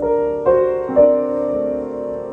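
Solo piano playing slow sustained chords, with new chords struck about half a second in and again a second in, ringing on between strikes.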